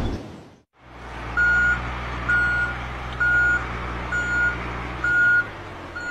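A loud noise dies away in the first half second. Then a truck's engine runs with a low, steady hum while its reversing alarm sounds six steady beeps, about one a second. The engine hum cuts out near the end while the beeps go on.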